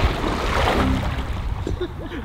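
Water splashing as a swimmer weighed down by heavy weighted clothing strokes and kicks through a pool, an attempt at swimming that does not succeed.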